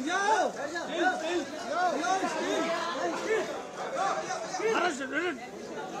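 Several people talking over one another at once, an unscripted babble of voices in a large room.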